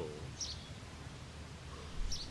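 Quiet outdoor ambience: a low steady rumble, with a single short bird chirp about half a second in.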